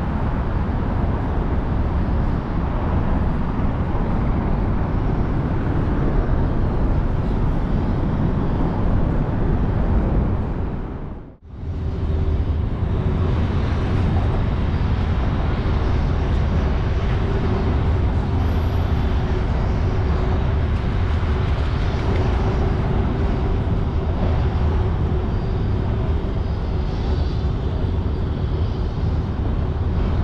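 Steady outdoor city noise of traffic, with a heavy low rumble. About eleven seconds in the sound cuts out for a moment, and after that a steady low hum runs under the noise.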